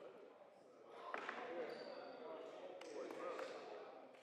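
Faint, distant voices echoing in a large sports hall, with a few sharp knocks of a ball striking the wooden floor, about one, three and three and a half seconds in.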